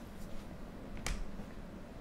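A single sharp click about a second in, over a low steady hum.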